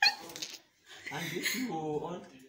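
A person's voice giving a short noise right at the start, then, after a pause, a drawn-out, wavering, whine-like vocal sound lasting about a second.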